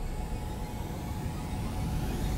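Trailer sound design: a low rumble under high rising whooshes that build toward a hit.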